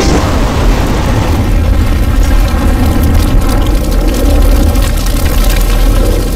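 Very loud, heavily distorted rumbling noise with strong bass and dense crackling, a bass-boosted sound effect that replaces a logo jingle.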